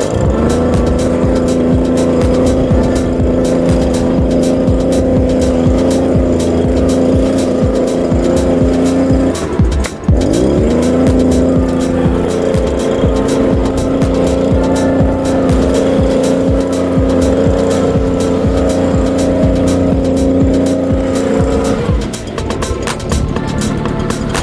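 A small petrol engine on a garden power tool run up to high revs, held steady, eased off about ten seconds in and run straight back up, then throttled down near the end.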